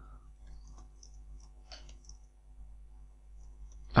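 Computer keyboard being typed on: faint, irregular key clicks over a low steady hum.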